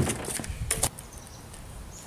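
Stunt scooter knocking on a flat board: a knock at the start and two sharp clacks a little under a second in, then only faint background noise.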